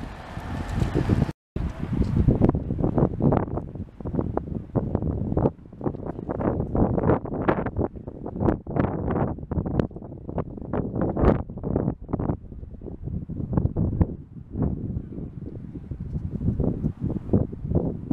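Wind buffeting the camera's microphone in uneven gusts, with a rumble that rises and falls irregularly; it drops out briefly a little over a second in.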